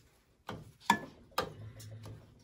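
A few short, sharp clicks about half a second apart as a gloved hand works the toggle switch on a small metal electrical box on a steam boiler.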